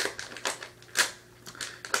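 A few short, sharp clicks and softer ticks, irregularly spaced, the loudest about a second in.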